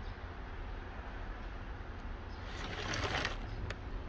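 A brief rustle, as of the plastic sheeting around the mushroom crates being brushed, about three seconds in, followed by a small click, over a steady low rumble of handling or wind on the microphone.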